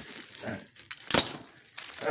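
Plastic bags and plastic-wrapped boxes being rustled and shifted by hand, with one sharp knock a little past the middle.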